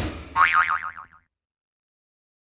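Cartoon 'boing' sound effect: a short hit, then a springy tone warbling up and down about six times a second, cutting off just over a second in.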